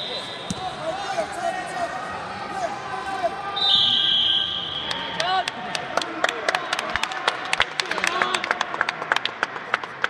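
A referee's whistle blown once, held for over a second, about three and a half seconds in, over murmuring spectator voices. Through the second half comes a rapid run of sharp squeaks and taps from wrestling shoes on the mat.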